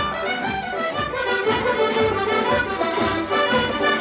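A traditional Irish folk band playing an instrumental tune with a steady beat.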